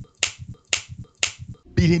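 Fingers snapping three times, about two snaps a second, then a man's voice near the end.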